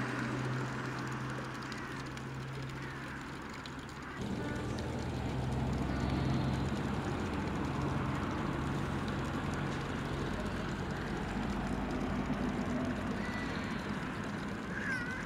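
Outdoor ambience dominated by a steady low hum from a motor or engine, over a haze of street noise. The sound changes abruptly about four seconds in, and a few faint chirps come near the end.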